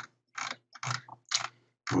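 Computer mouse scroll wheel ratcheting in three short bursts of clicks, as a document is scrolled.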